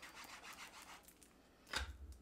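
Faint rubbing and rustling of paper and cardstock panels being handled, with one short, louder scrape near the end.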